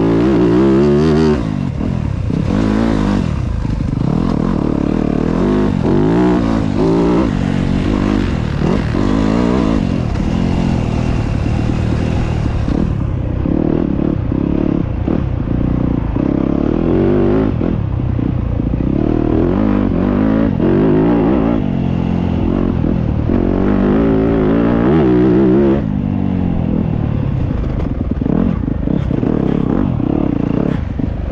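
Motocross dirt bike engine being ridden hard, revving up and dropping back again and again through the gears, heard close from the rider's helmet.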